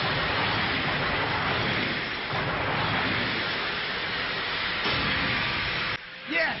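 Cartoon battle sound effects of a toy battle car's motor and wheels grinding and skidding around an arena ring: a steady rushing noise.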